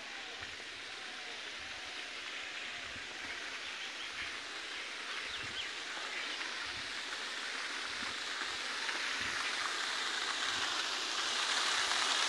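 Steady outdoor hiss that grows gradually louder, with a few faint high chirps near the middle.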